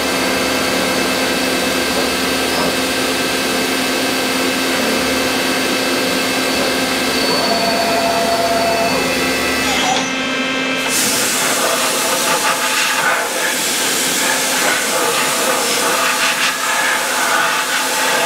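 CNC milling center running steadily with a hum and hiss as an end mill chamfers the keyway of a steel index plate. About ten seconds in, the cut ends, the top of the sound briefly drops out, and a broader, higher hiss carries on.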